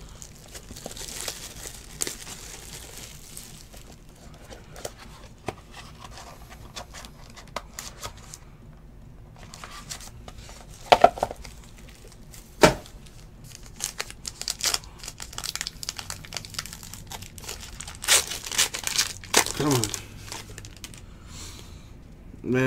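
Trading-card pack wrappers from a 2018-19 Panini Court Kings basketball case crinkling and tearing as packs are opened by hand, with the cards rustling, and a couple of sharp clicks about halfway through.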